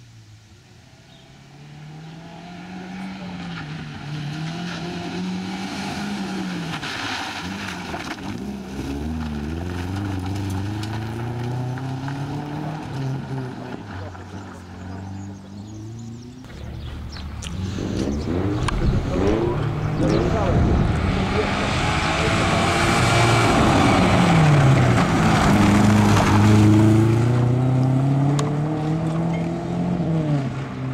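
Subaru Impreza rally car's flat-four engine revving hard, rising and falling with each gear change and lift as it drives a gravel stage. It grows louder in the second half as the car comes close.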